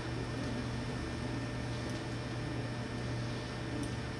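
Room tone: a steady low electrical hum with a faint hiss underneath.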